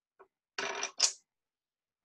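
Wooden coloured pencils clattering on a table as they are put down and pushed together: a short rattle, then a sharper, louder knock about a second in.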